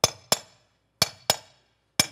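A hammer striking a masonry chisel held against a concrete wall block, scoring a groove across it. The blows are sharp and ring a little, and come in pairs about a third of a second apart, a pair each second. The block is being scored, not yet split: it takes several passes around all four sides before it breaks.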